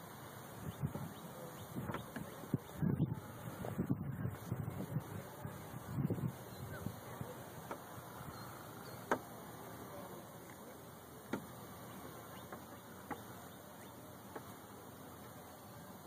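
Wind gusting on the microphone in irregular low rumbles, heaviest in the first half, with a few sharp clicks later on.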